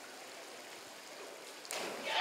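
Steady faint rush of water from the diving pool, then about a second and a half in a louder rush as a platform diver enters the water.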